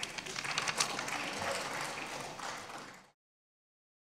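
Applause in a parliamentary chamber: many hands clapping in a dense patter that cuts off suddenly about three seconds in.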